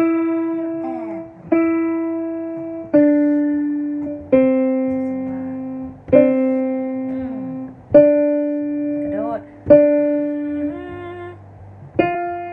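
Piano played slowly, one note at a time, about one note every one and a half seconds, each struck and left to ring and fade. The notes step down in pitch and then come back up, as a simple melody.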